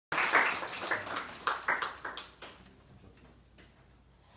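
A small audience applauding, the claps thinning out and stopping about two and a half seconds in.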